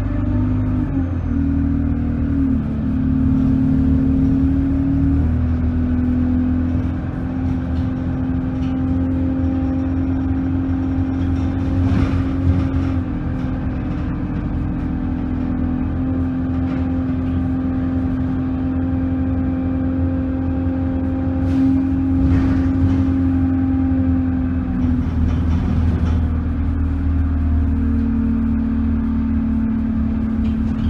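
Bus engine and drivetrain running, heard from inside the passenger cabin: a steady drone whose pitch shifts in steps a few times as the bus changes speed and gear, with a few short knocks and rattles.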